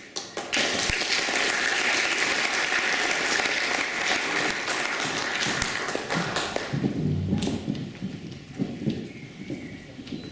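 Audience applauding in a hall, dense clapping that thins after about six seconds into scattered claps, with a few low thumps near the end.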